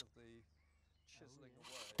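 Faint, low-level speech twice, briefly, with near silence between.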